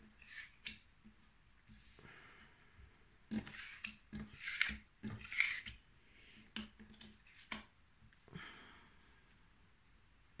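Oracle cards being slid and repositioned by hand across a tabletop: about eight short, soft scraping swishes, spread unevenly.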